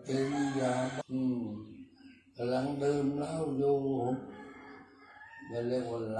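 An elderly Buddhist monk's voice chanting a Pali blessing in a low, nearly level monotone, in long held phrases. It breaks briefly about a second in and again around two seconds, then falls quiet for over a second before the chant picks up near the end.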